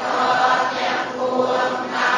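A group of voices chanting a Buddhist chant in unison, in long, steady held notes that move to a new syllable about once a second.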